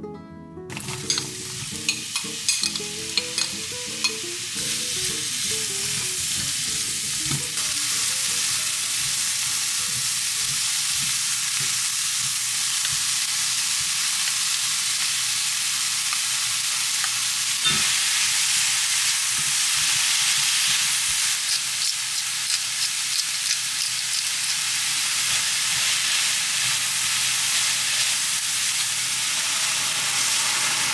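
Minced garlic, then chopped onion and tuna, sizzling steadily in oil in a stainless-steel frying pan. Sharp clicks of a utensil against the pan come in the first few seconds.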